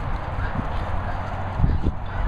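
Steady rushing wind noise and handling on a handheld phone microphone carried across a field, with a few short low thumps about half a second in and near the end.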